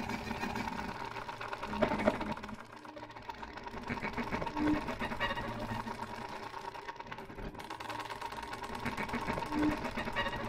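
Violin played through electronic effects in free improvisation: a dense, rapidly pulsing texture over a held tone, with a swell about two seconds in and two short low notes, one near the middle and one near the end.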